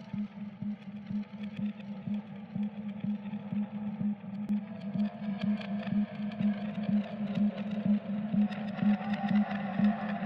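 Electronic techno track intro: a low tone pulsing at a steady, even rhythm with light clicks. A hazier higher layer swells in from about halfway.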